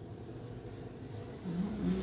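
A woman's closed-mouth "mmm" of enjoyment while chewing a mouthful of tiramisu, a wavering hum that starts about one and a half seconds in, over a steady low background hum.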